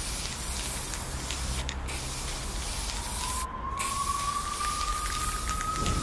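Aerosol spray-paint can hissing in long sprays, breaking off briefly twice. About halfway through, a faint tone starts and slowly rises in pitch under the hiss.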